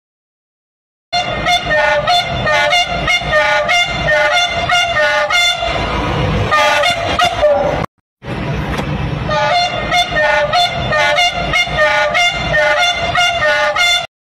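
A passing train's horn sounding over and over in a rhythmic pattern, with regular knocks about three a second underneath. It starts about a second in and breaks off briefly just before halfway.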